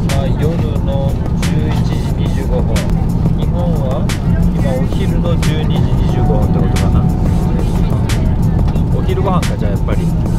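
Steady low drone of a jet airliner's cabin in flight, with faint bits of voices over it and a few small clicks.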